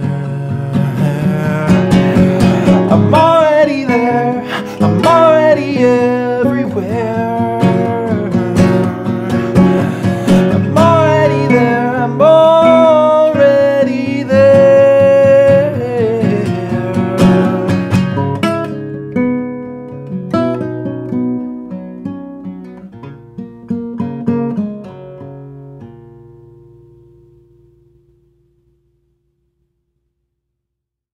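Nylon-string classical guitar strummed and picked with a man singing a held, sliding melody over it. About halfway through the singing stops, and the guitar plays on alone, getting quieter until it fades out near the end.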